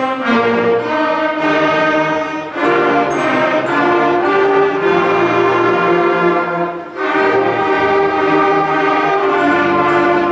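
School concert band of clarinets, flutes, brass and tubas playing a piece together, held notes in full ensemble with short breaks between phrases about two and a half and seven seconds in.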